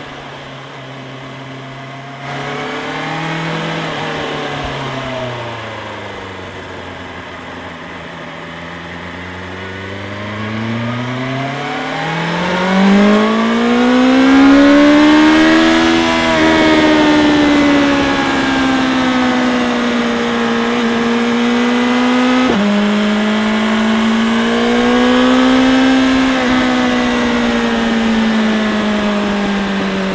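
BMW S1000R inline-four with an Akrapovič exhaust under way. The engine rises and falls in pitch early on, then pulls hard for several seconds from about ten seconds in, rising steadily. Two sudden drops in pitch mark upshifts, one after the climb and another a few seconds later, before it builds once more and eases off near the end.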